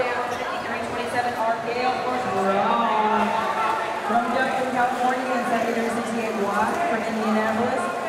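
Background voices: several people talking at once in a crowded hall, with no clear words.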